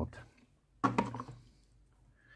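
A sharp click as cable plugs are handled, followed at once by a short murmured syllable from a man's voice, about a second in.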